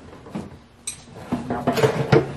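Clicks and knocks as the rear seat of a stripped-out Jeep is lifted and shifted: two sharp clicks in the first second, then a busier run of knocks with a short pitched sound in the second half.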